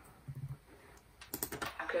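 Taps and clicks on a laptop's keys, a quick run of several about a second and a half in.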